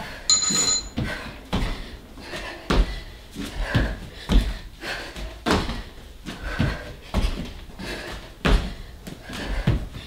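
Feet and hands landing on a floor mat during repeated burpee hop-overs: a run of dull thuds, about two a second. A short high electronic beep sounds just under a second in.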